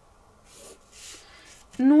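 Two faint soft swishes of a marker and a plastic pattern ruler moving on drafting paper, then a woman starts speaking near the end.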